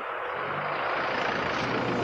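A van's engine running, with a steady wash of outdoor noise over it.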